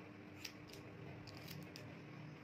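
Steel hair-cutting scissors snipping through short hair held against a comb: a series of short, crisp snips, the sharpest about half a second in.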